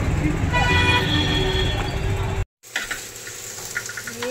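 Street traffic rumbling, with a vehicle horn held for about two seconds. Then, after a sudden cut, malai chaap frying in oil in a kadhai, sizzling, with a couple of clicks of the spoon against the pan.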